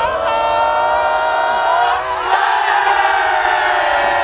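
A group of players shouting together in one long, held cheer, many voices overlapping on drawn-out vowels that slowly rise and swell about two seconds in.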